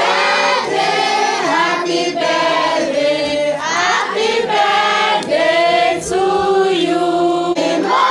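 A group of women and children singing a birthday song together, loud and continuous.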